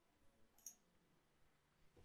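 Near silence: room tone, with a single faint mouse click a little over half a second in.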